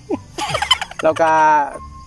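A man laughing: a quick run of short bursts, then a drawn-out, slowly falling vocal sound.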